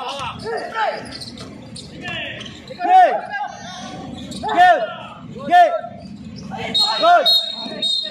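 Basketball game in play: sneakers squeak sharply on the court several times, loudest about three, four and a half, five and a half and seven seconds in, among ball bounces and players' voices.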